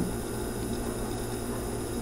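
Steady low hiss with a faint hum underneath: room tone, with no distinct events.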